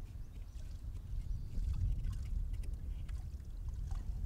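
Steady low rumble of wind on the microphone, with faint scattered scratches and ticks of a knife prying a soil sample from the wall of a soil pit.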